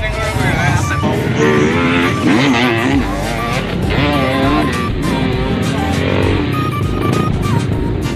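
Dirt-bike engines revving hard as the bikes climb a steep dirt slope, mixed with loud music with singing.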